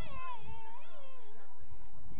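A high-pitched voice giving one long, wavering, wordless call that lasts about a second and a half.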